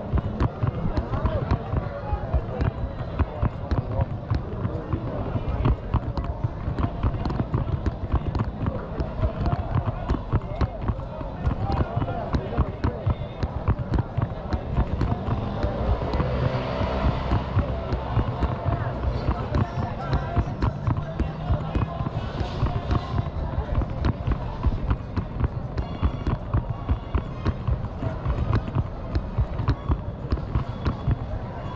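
Steps thudding about twice a second, close to the microphone, over the background chatter of a busy open-air street market.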